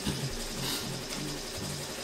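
BAI embroidery machine stitching, its motors giving a quick run of short whirring tones that keep changing pitch.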